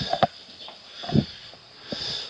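Footsteps thudding on the floor of a camper trailer, about a second apart, over a faint steady hiss.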